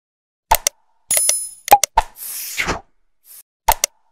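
Animated subscribe-button sound effects: after a moment of silence, two sharp pops, then a bright bell-like ding, more clicks and a short whoosh, with another pop near the end.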